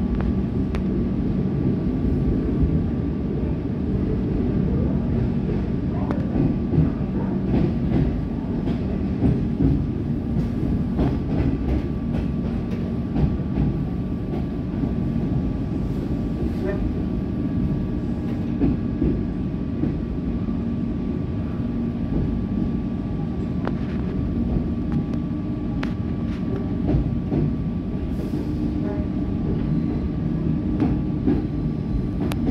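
Cabin sound of an EDI Comeng electric train on the move: a steady rumble of the traction motors and wheels with a constant hum, and scattered clicks and knocks from the track.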